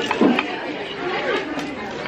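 Overlapping chatter of several voices around a restaurant table.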